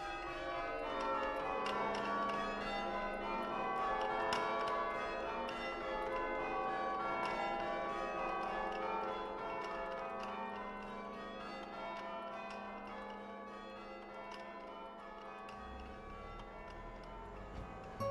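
Cathedral tower bells chimed by hand from a chiming frame: hammers strike the stationary bells one after another, ringing changes in an even rhythm, with the notes overlapping and ringing on. The chiming is a little louder in the first half and eases toward the end.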